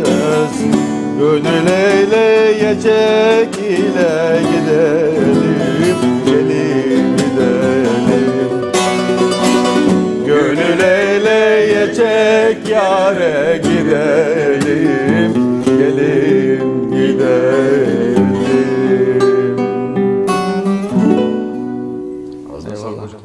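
A man singing a Turkish folk song (türkü) to bağlama and acoustic guitar, with ornamented, wavering melodic lines over plucked strings. The music winds down to its close near the end.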